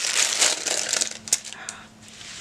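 Clear plastic bag crinkling and crackling as it is handled and set down, dying away about a second and a half in.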